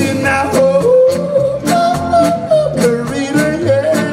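Live soul band playing, with a male voice singing a wordless, sliding melody over a steady drum beat, upright bass, keyboard and horns.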